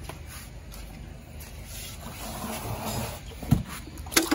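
Faint wet sound of eggs being hand-stripped from a female catfish into a plastic bowl, swelling a little past the middle, with a single short thump near the end.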